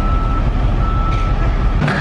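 Steady low outdoor rumble with a thin high-pitched tone held over it. The tone breaks off briefly about half a second in. Both stop abruptly shortly before the end.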